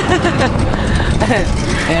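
Indistinct voices and laughter of people close by, over a low steady rumble.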